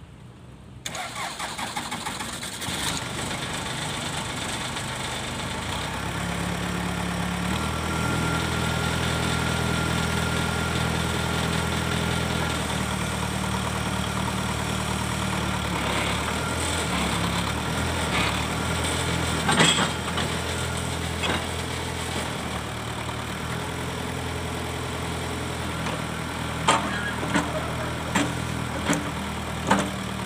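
A backhoe loader's diesel engine is cranked about a second in, catches within a few seconds and settles into a steady idle. A sharp metallic clank comes about two-thirds through, and a run of clanks near the end as the backhoe arm moves.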